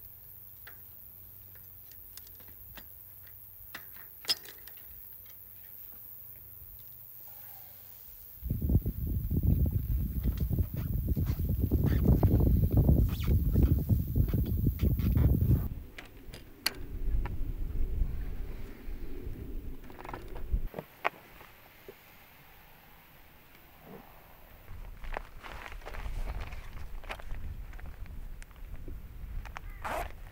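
Scattered small clicks and rattles of a bicycle being handled and loaded onto a packraft, with a loud low rumbling noise for several seconds from about eight seconds in and weaker stretches of it later.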